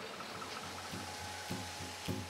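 Steady hum and hiss of jar-filling and labelling machinery on a conveyor production line, with a faint thin whine held underneath. Faint soft low pulses come in about a third of the way through.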